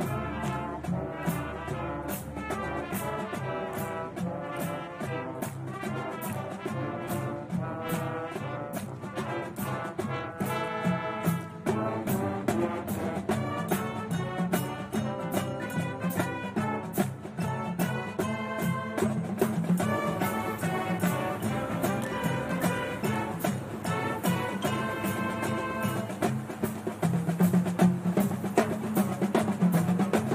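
High school marching band playing, brass carrying the melody over frequent percussion hits. It gets louder near the end.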